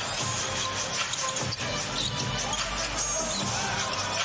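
Basketball game sound: a ball being dribbled on a hardwood court over arena crowd noise, with music playing.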